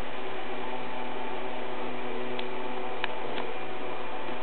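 Steady hum with hiss, with two or three faint clicks in the second half.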